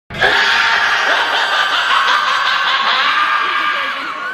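Loud, dense laughter from several overlapping voices snickering at once, running steadily throughout.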